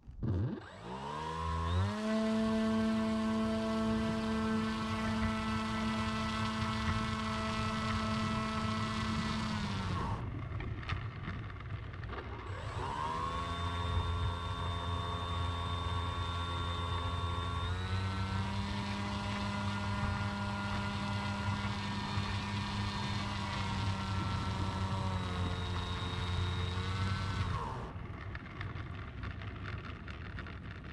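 Ritewing Z3's electric motor and propeller spooling up to a steady high whine, held for about eight seconds, then winding down. About two seconds later it spools up again, steps up in pitch about halfway through the run, steps back down and cuts off a couple of seconds before the end, with a low rumble underneath.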